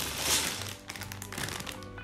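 Plastic bag of LEGO pieces crinkling as it is picked up and handled. The crinkling is loudest in the first half second, with more sharp crackles about a second in, over steady background music.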